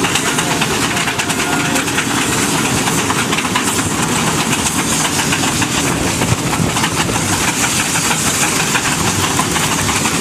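Several steam road locomotives working together under heavy load, their exhaust beats overlapping into a dense, continuous chuffing with a steady hiss of steam.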